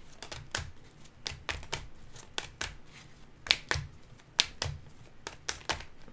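A deck of tarot cards being shuffled hand over hand: a steady run of sharp card clicks and slaps, about two or three a second, with two louder slaps past the middle.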